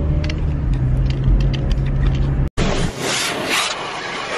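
Steady low engine and road hum inside a moving car, with a scatter of light ticks. After an abrupt cut about two and a half seconds in, loud hissing spray of car-wash water hitting the car.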